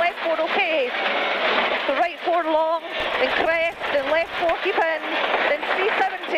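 Ford Focus WRC rally car's engine running hard at speed on gravel, its pitch rising and falling with the throttle and gear changes, with stones and gravel rattling against the car in rough spells. It is heard through the crew's intercom.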